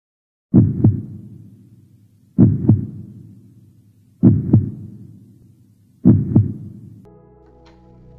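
Heartbeat-style intro sound effect: four deep double thumps, lub-dub, about two seconds apart, each fading away. Near the end a held music chord comes in.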